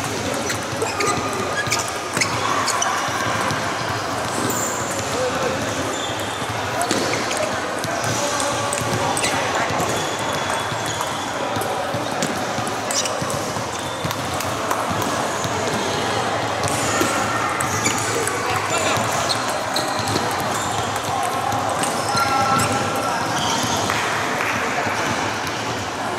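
Table tennis balls clicking off rackets and tables, many scattered ticks from this and neighbouring tables, over a steady background of voices in the hall.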